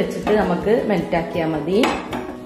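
A metal saucepan clattering as it is lifted off a gas burner's pan support, with a sharp clink near the end.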